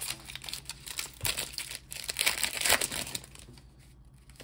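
Foil wrapper of a Pokémon card booster pack crinkling and tearing as it is opened. The rustling is loudest a little over two seconds in and dies down near the end.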